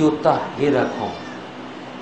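A man's voice reciting an Arabic Quranic phrase in a drawn-out, melodic way, dropping to a short pause after about a second.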